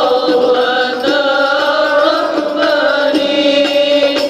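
A man chanting a qasidah in praise of the Prophet Muhammad through a microphone: a slow devotional melody with long held notes and ornamented turns.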